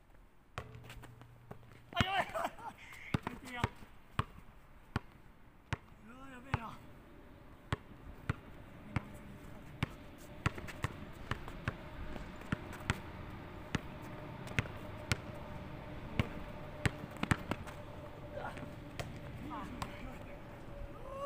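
A basketball being dribbled on a painted hard court during one-on-one play, a steady run of sharp bounces about one to two a second.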